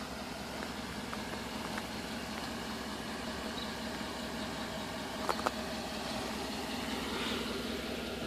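Chevrolet Tahoe's V8 engine idling steadily, with two light clicks about five seconds in.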